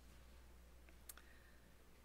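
Near silence in a room, with a faint steady low hum and two faint short clicks about a second in.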